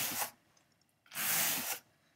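Wire-pinned dog slicker brush dragged across wool fiber on a blending board's carding cloth: two hissing brush strokes, one ending just after the start and a longer one about a second in.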